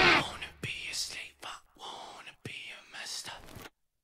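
Band music with bass cuts off and a faint whispering voice follows in short breathy phrases.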